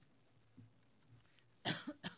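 A person's cough near the end, after quiet room tone.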